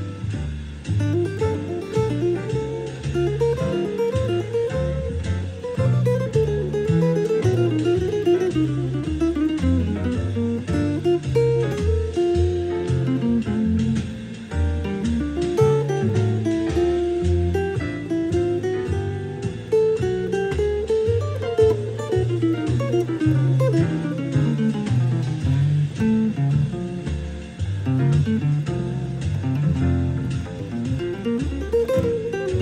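Archtop jazz guitar playing single-note melodic runs that rise and fall over low bass notes changing about twice a second.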